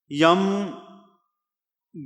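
A man's voice speaking one drawn-out word that fades out within about a second, followed by a pause.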